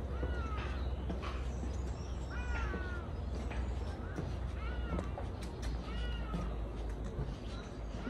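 A bird calling repeatedly: about five short calls a second or two apart, each rising then falling in pitch.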